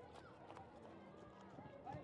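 Faint, distant voices of players and spectators around a rugby sevens pitch, with a few soft knocks.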